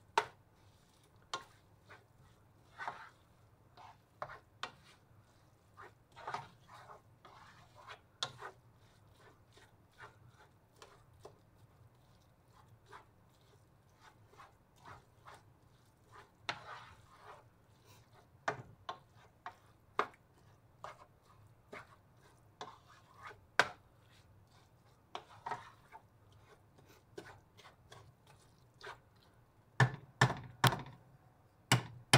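Wooden spatula tapping and scraping against a nonstick frying pan in irregular, scattered strokes, stirring and chopping raw ground beef with diced onions and green peppers.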